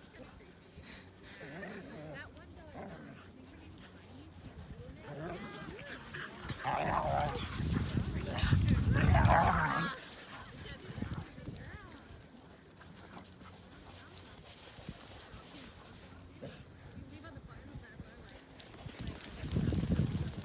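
Silken windhounds playing rough together, barking and yipping, loudest in a burst of calls in the middle with a low rumble beneath it.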